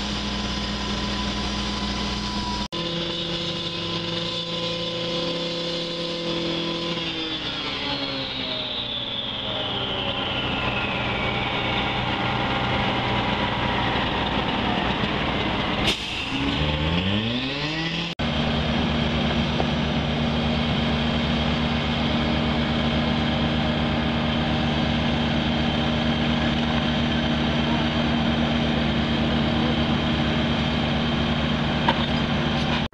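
Engines of asphalt paving machinery running steadily, broken by abrupt cuts about three and eighteen seconds in. In between, an engine's pitch falls slowly, then rises quickly as it revs up just before the second cut.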